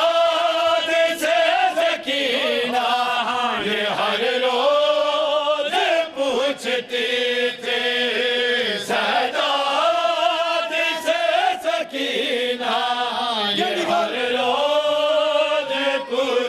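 A group of men chanting a noha (Shia lament) in unison into a microphone, in long sung phrases that pause and start again every couple of seconds. A few sharp knocks come between the lines.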